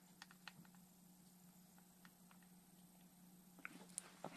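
Near silence: a few faint, scattered clicks from a hand handling a small alligator clip on the rim of a silicone travel kettle, over a faint steady hum.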